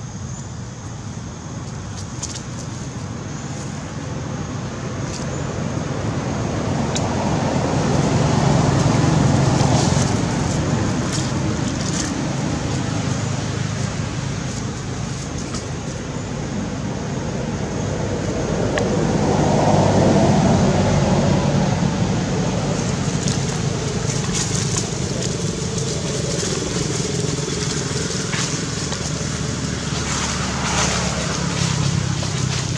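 A low outdoor rumble that swells twice, loudest about nine and twenty seconds in, with scattered faint clicks.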